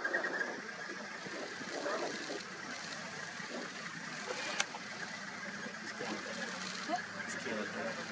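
Quiet, indistinct voices of people talking, over a steady hum. One sharp click about four and a half seconds in.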